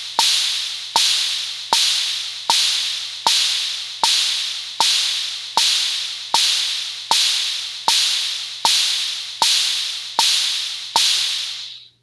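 Drum machine (the drumbit web app, Kit 2) playing an open hi-hat and a bongo struck together on every beat at 78 bpm, a steady quarter-note pulse of about 1.3 strokes a second. Each stroke's hi-hat hiss fades away before the next, and the hi-hat is a little louder than the bongo's short knock. The pattern stops shortly before the end.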